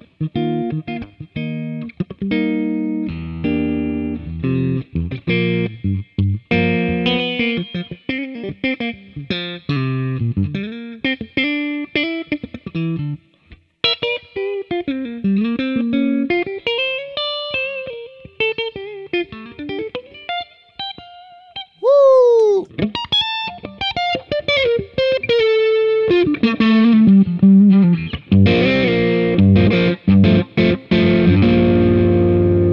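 Fender American Vintage Thin Skin '52 Telecaster played through an amp with both pickups on together: the neck humbucker and the bridge single coil. It moves from chords into single-note lines with string bends, has a sharp falling bend about two-thirds of the way in, and ends in thicker, more overdriven chords.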